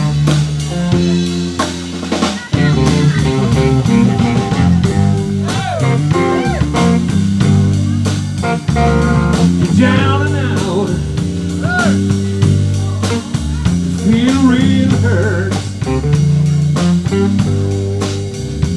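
Live blues band playing the instrumental intro of a song: electric guitar, electric bass and drum kit, with a lead line of bent notes over the band.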